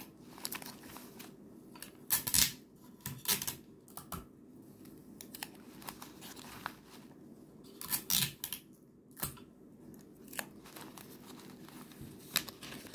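Lined notebook paper tearing and crinkling in short, irregular rips. The loudest come about two seconds in and again around eight seconds in.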